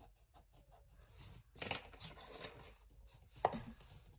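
Pencil scratching over paper for about a second and a half, then a single sharp tap.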